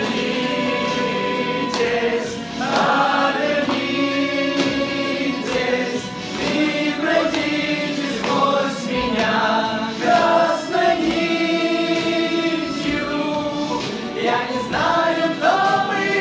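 Young men's voices singing a song together live, accompanied by a drum kit keeping time with light cymbal and drum hits.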